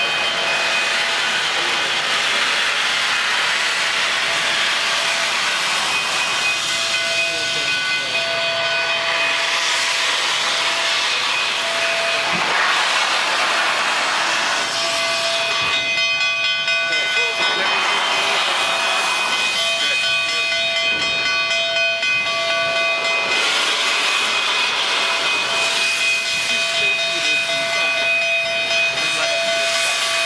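Steam hissing loudly and continuously from standing Rio Grande steam locomotives, with steady whistling tones running through the hiss that drop out and return, and surges of louder hiss now and then.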